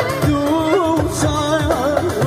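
Live Kurdish folk music: a violin melody, wavering and ornamented, over keyboard and the steady beat of a large frame drum.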